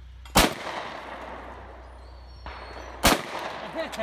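Two shotgun shots about two and a half seconds apart, each followed by a trailing echo: a report pair of clay targets being shot at.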